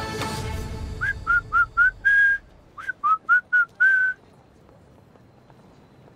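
A person whistling two short phrases of about five quick notes each, each phrase ending on a longer held note.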